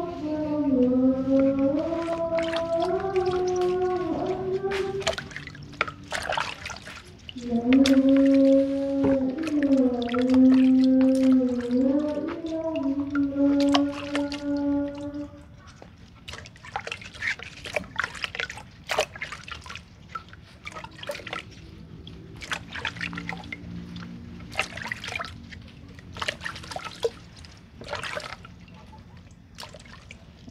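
A voice humming a slow tune in long held notes, in two phrases over the first half. After that, splashing, dripping and short scraping clicks as taro corms are rubbed clean by hand in a bucket of muddy water.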